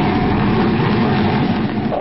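Sound effect of a jet plane diving: a steady, loud rush of jet engine noise.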